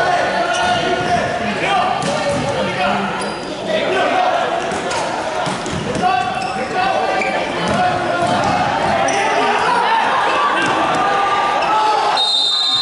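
A basketball bouncing repeatedly on a gym floor during play, under the voices of players and spectators calling out.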